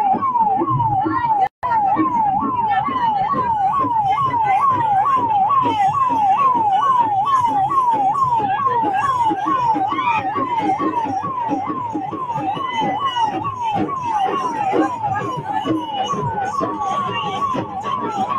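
Electronic siren repeating a quick falling sweep about twice a second, switching briefly to a steady tone near the end, over crowd noise and voices. The sound cuts out for an instant about one and a half seconds in.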